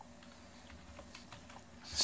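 Faint typing on a computer keyboard: a scatter of light keystroke clicks, more of them in the second half.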